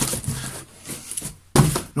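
A cardboard box and its packing handled and rummaged through by hand, with irregular rustling and knocks and a sharp knock about one and a half seconds in.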